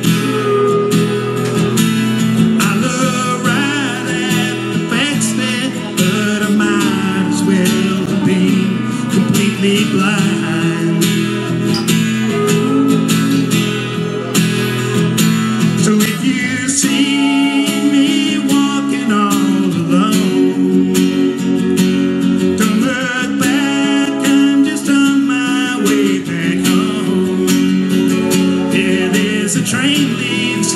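Live country music: an acoustic guitar strummed with a steel guitar playing sustained notes that slide between pitches.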